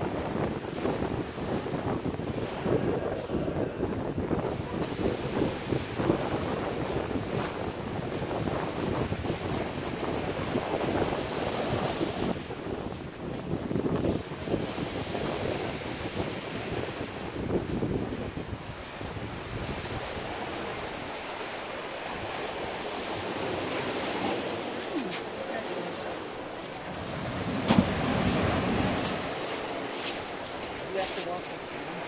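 Ocean surf washing onto a beach, with wind buffeting the microphone.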